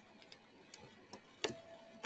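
A few faint, irregular clicks at a computer, the loudest about one and a half seconds in.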